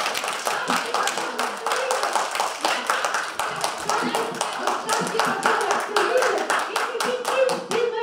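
Audience applause: many people clapping irregularly, with voices talking under the clapping. The clapping stops just before the end.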